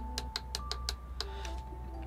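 A run of light, quick clicks from the buttons of a FrSky Taranis X9D Plus radio being pressed repeatedly to exit its menus, over faint steady tones.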